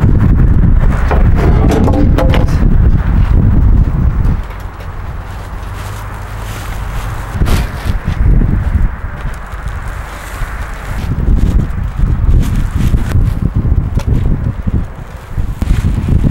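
Wind buffeting the microphone in gusts, loudest for the first few seconds, with occasional thuds and rustles as bags of bark mulch are lifted off a pallet and dropped onto a dump truck bed.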